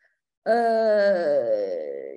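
A woman's long drawn-out hesitation sound, "eee", in the middle of a sentence. It starts about half a second in and is held for about a second and a half, its pitch slowly falling.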